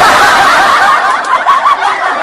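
Loud, unbroken high-pitched laughter, a dense run of snickering and giggling.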